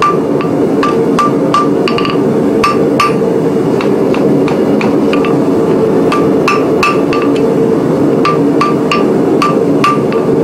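Hand hammer striking hot steel on an anvil while setting a forge weld, sharp ringing blows about three a second in runs, with two short pauses. A steady roar from the gas forge's burners runs beneath.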